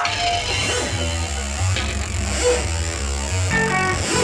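Live rock band playing through the PA, heard from the audience: electric guitar over a stepping bass line that comes in right at the start.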